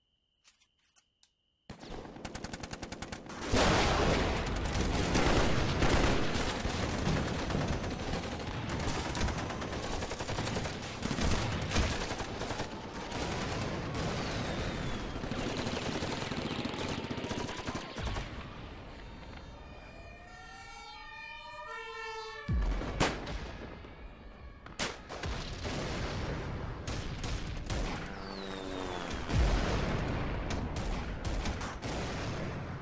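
After a couple of seconds of near silence, dense battle gunfire breaks in suddenly: sustained rapid machine-gun and rifle fire that runs on, thinning briefly around twenty seconds in, with a few louder bangs after that.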